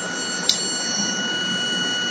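Vibratory stress relief exciter motor running steadily at over a thousand rpm during manual speed-up, a steady mechanical noise with a thin, steady high whine over it. A short click about half a second in.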